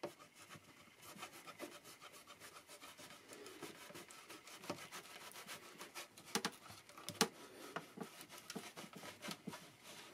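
Thin steel palette knife being worked under a heated guitar fingerboard extension, scraping with many small crackles as it pries at the glue joint between fingerboard and top. A few sharper cracks stand out about six and seven seconds in.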